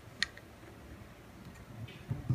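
A single light click about a quarter of a second in, from a diaphragm and gasket being handled and pressed down onto a Tillotson HW27A kart carburettor body. Otherwise only faint handling noise.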